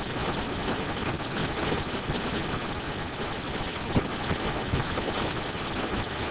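Steady classroom room noise, an even hiss-like hum, with a few faint ticks, the clearest about four seconds in.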